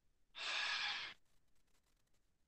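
A single deep breath out, a sigh-like exhale lasting under a second, taken to relax after a kicking drill.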